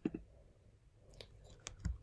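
A few faint, scattered clicks of computer keys being pressed.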